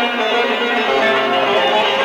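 Bağlama (long-necked saz) playing a Turkish folk melody.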